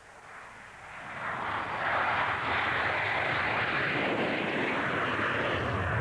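Jet airliner engines running: a rushing noise that fades in over about two seconds, then holds steady and loud.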